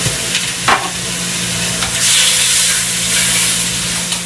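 Venison shanks searing in a very hot pot, sizzling steadily as they are turned and packed in with tongs. A couple of clicks within the first second, and the sizzle swells louder for a second or so about halfway through.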